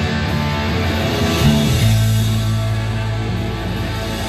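Live rock band playing an instrumental passage with electric guitar and drums, loud and steady, no vocals. About two seconds in, the low notes drop to a lower held note.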